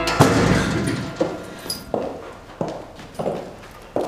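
Footsteps on a hard floor in a quiet room, about one step every two-thirds of a second, after a heavier thump at the start.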